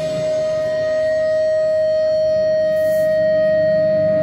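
Electric guitar holding a single long sustained note, steady in pitch and unbroken, over a faint low backing from the band.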